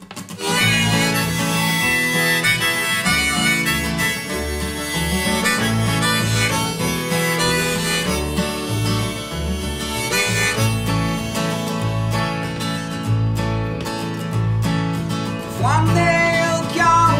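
Live instrumental intro: a harmonica carries the melody over a strummed steel-string acoustic guitar and a plucked double bass. It comes in about half a second in.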